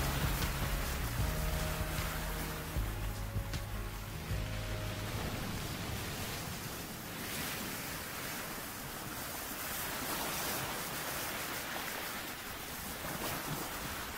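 Low held notes of the song's last chord fade out in the first few seconds over the steady rush of sea waves. The surf then carries on alone, swelling and easing slowly.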